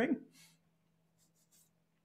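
The last syllable of a spoken question, then near silence with a faint steady electrical hum and a couple of faint ticks about one and a half seconds in.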